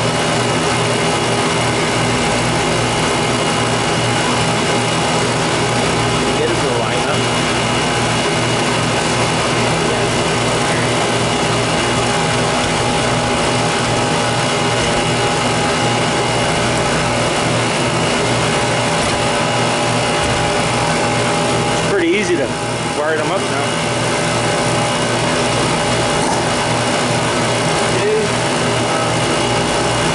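Refrigeration vacuum pump running steadily with a constant hum while it evacuates a walk-in cooler's refrigeration system.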